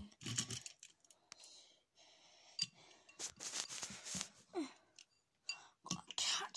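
Faint scattered clicks and rustles of handling, with a brief hissing burst between about three and four seconds in and a short falling vocal sound at about four and a half seconds.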